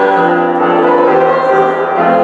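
Keyboard instrument playing a slow hymn in sustained chords, the notes changing about every half second.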